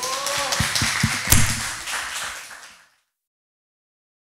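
Audience applauding, with a brief vocal cheer at the start; the applause fades out about three seconds in.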